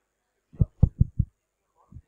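Four quick thumps on a handheld microphone, carried through the hall's PA, as it is tapped.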